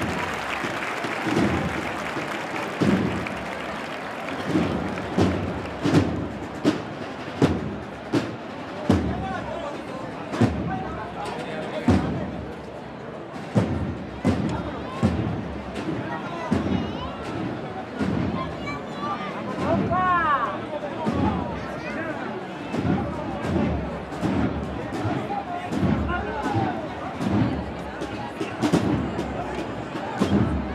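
A Holy Week procession band's drums beating a slow, steady march rhythm behind the moving float, over a murmuring crowd.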